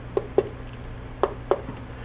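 Four short taps of a fingertip pressing the buttons of a small 16-key keypad, in two quick pairs about a second apart, over a faint steady low hum.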